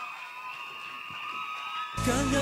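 Audience applauding and cheering, with sustained high-pitched screams from fans. Music starts suddenly at the very end.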